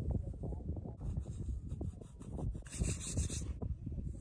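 Fingers scraping and brushing damp sand aside in short, irregular gritty strokes, clearing around a buried selenite crystal. A brief hiss comes near three seconds.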